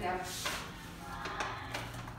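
Paper gift bags being moved and set down on a wooden window ledge, with a few light knocks and scrapes.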